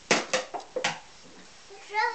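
A small toy cooking pot thrown down and clattering: three sharp knocks within the first second, the later two with a brief ring.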